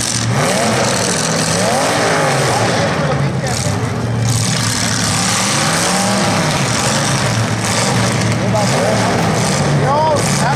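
Demolition derby cars' engines running and revving, their pitch rising and falling again and again over a steady low drone.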